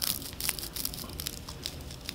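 Fine plastic strings on a badly strung 3D-printed die crackling and crinkling as fingers handle it close to the microphone: the stringing left by wrong print settings. Irregular sharp crackles, thickest in the first half second.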